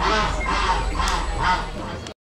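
Ducks quacking: a run of about four harsh calls, roughly half a second apart.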